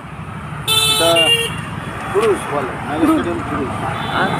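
A vehicle horn honks once, about a second in, lasting under a second with its pitch stepping down partway through, over a steady hum of road traffic.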